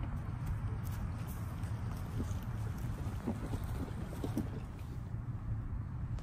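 Wind noise on the microphone: a low, steady rumble, with a few faint, brief sounds in the middle.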